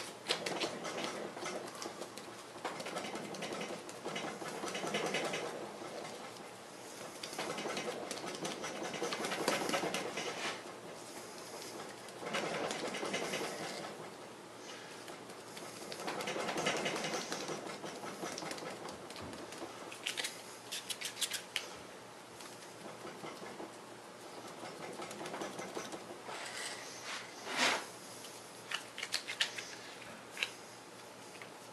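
Gloved hands rubbing and patting soft epoxy syntactic dough to smooth it, a scratchy rubbing that comes in swells of a few seconds, with a few light taps and clicks near the end.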